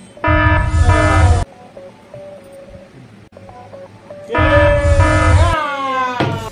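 Two short edited-in sound effects, each about a second long, with horn-like held tones over heavy bass; the first comes just after the start, the second about four seconds in and ending in falling pitches.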